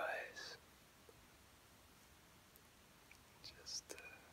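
A man's soft whisper ending a phrase, then quiet room hiss, with a few faint brief sounds near the end.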